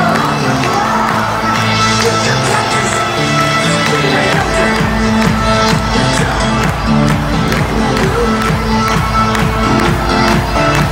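Loud music over a stadium public-address system, with crowd noise underneath; a heavy bass beat comes in about four and a half seconds in.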